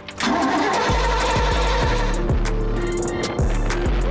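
Mercruiser 5.7 small-block V8 sterndrive engine cranked with the key and firing up, then running, with background music with a steady beat over it.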